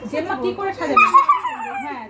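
Women and a girl laughing and squealing together, with one loud high-pitched squeal about a second in.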